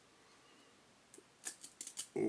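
Glossy trading cards being handled and peeled apart: a quick run of sharp clicks and snaps of card stock starting about a second and a half in. The cards are pretty sticky and cling to one another.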